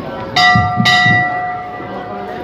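Temple bell struck twice, about half a second apart, its metallic tone ringing on and slowly fading.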